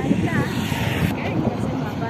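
People's voices talking over outdoor roadside noise, with a brief hiss in the first second.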